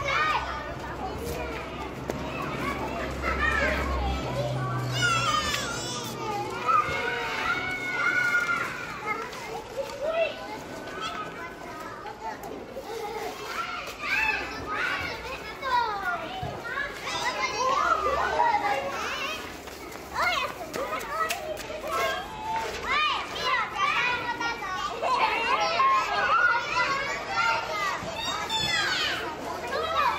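A crowd of children playing, many high voices shouting and calling over one another without clear words.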